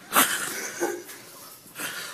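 A person's loud, breathy exhale, with a short voiced sound just under a second in.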